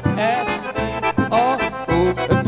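Forró trio playing: piano accordion carrying a wavering melody over the regular low beat of a zabumba bass drum and the ring of a triangle.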